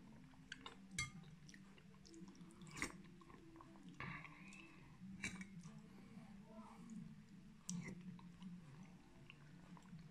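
A man eating bean soup with a metal spoon from a glass bowl: quiet chewing, broken by a few sharp clinks of the spoon against the bowl.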